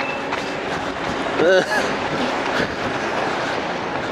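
Steady roadside street noise from passing traffic, with a short laugh about a second and a half in.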